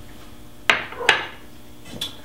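Two sharp knocks of kitchenware on a tiled counter, less than half a second apart, as a bowl is set down and a stainless steel mixing bowl is picked up; the second knock rings briefly.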